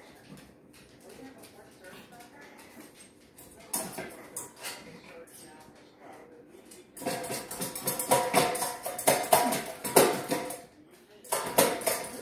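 Stainless steel dog bowl rattling and clanking in its raised feeder stand as a small dog noses and pushes at it to ask for food. There is a short clatter about four seconds in, then a run of ringing clanks from about seven seconds in that stops briefly and starts again near the end.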